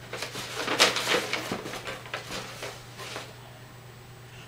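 Paper and packaging being handled and rustled, a run of crinkles and light taps that dies down after about three seconds, over a steady low electrical hum.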